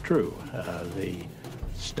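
Faint speech: a voice talking quietly, well below the level of the surrounding narration.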